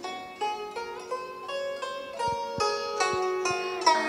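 A pentatonically tuned zither with movable bridges, plucked note by note: a short melody of about three notes a second, each note ringing on after the pluck. Right at the end a note starts to bend in pitch as the string is pressed down behind the bridge.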